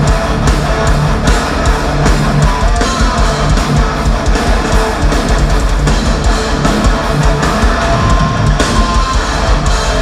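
Thrash metal band playing live: heavily distorted electric guitar over bass and drums in a loud, dense mix, heard from the audience.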